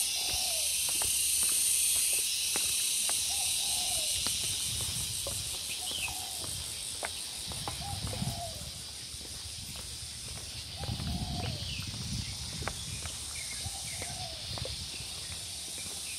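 A steady, high-pitched insect chorus that slowly fades. A bird calls over it again and again in short arched notes, and there are footsteps on a paved path.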